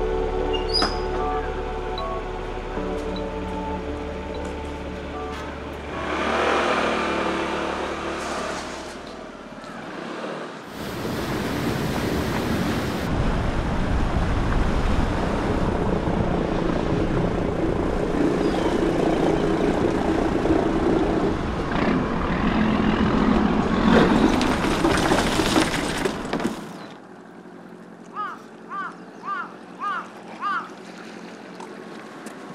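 Background music at first. From about ten seconds in, a small fishing boat's engine and its rushing wake take over, loud and steady, and cut off suddenly a few seconds before the end.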